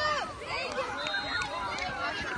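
A group of children shouting and calling out over one another while running about in a playground game.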